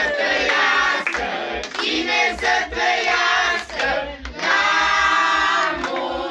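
A group of people singing together, with hand clapping and a regular low thumping beat underneath.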